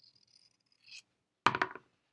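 Fabric scissors cutting through layered quilting cotton: a faint, high rasp of the blades, then a short, louder crunching cut about a second and a half in. It is a good cutting sound.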